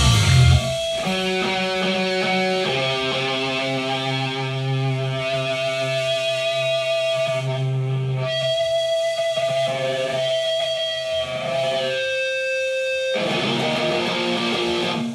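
The full rock band, drums included, cuts off about half a second in, leaving amplified electric guitar playing long held, ringing notes that change pitch every second or two, the closing passage of the song.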